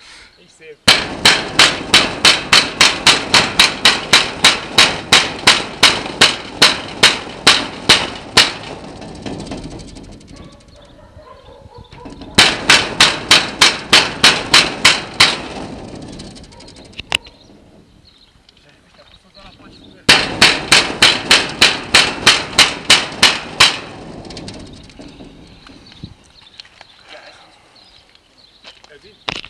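Repeated banging on a metal-barred gate with plastic panels, in three runs of fast, even strikes about four a second, each several seconds long and dying away into a rattling din.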